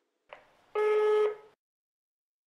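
Answering-machine beep: one steady electronic tone about half a second long, ending the recorded message, with a faint click just before it.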